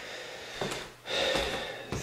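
A person's sharp, noisy intake of breath, lasting most of a second and starting about a second in.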